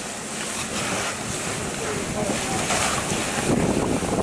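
Fire hose nozzle spraying water in a steady rushing hiss onto a burning car, growing louder toward the end.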